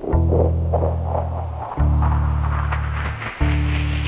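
Instrumental music of a song's intro: deep held bass notes with a new note about every one and a half seconds, under a hissy wash that swells higher and louder toward the end.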